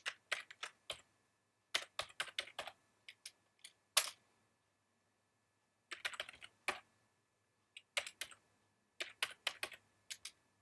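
Computer keyboard keys clicking in short bursts of typing, a few keystrokes at a time with gaps of about a second between bursts.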